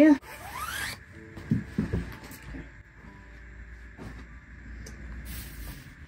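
Fabric scissors cutting through a layer of white cotton sateen curtain lining, the blades rubbing and creaking as they slide along the cloth on the table.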